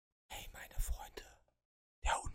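A man whispering a short phrase close into the microphone, lasting about a second and ending about a second and a half in.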